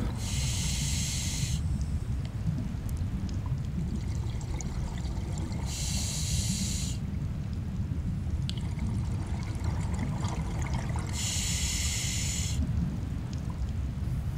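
Scuba diver breathing through a regulator underwater: three hissing breaths, each about a second and a half long and spaced about five and a half seconds apart, over a steady low underwater rumble.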